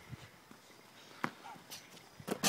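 Faint footsteps of a player running in on concrete to dunk, with one sharper tap about a second in.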